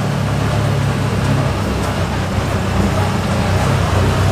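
Can-Am Defender HD8 side-by-side's Rotax V-twin engine and drivetrain running at a steady speed on the move, heard from inside the cab as a low, even drone.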